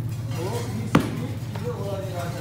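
A single sharp thud about a second in, over a steady low hum and faint voices.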